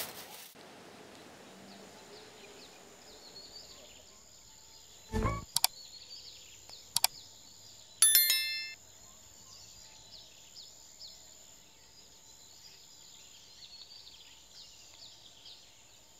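Faint outdoor ambience with small birds chirping. About five seconds in comes a short whoosh, then two clicks, and about eight seconds in a bright chiming ding rings out for under a second: the sound effects of a like/subscribe-and-bell overlay animation.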